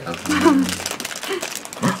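A brief spoken phrase and a short laugh near the end, over a crinkling, rustling noise.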